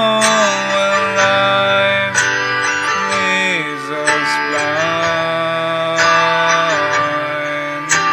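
Music led by guitar, with long held notes that slide in pitch and no lyrics sung.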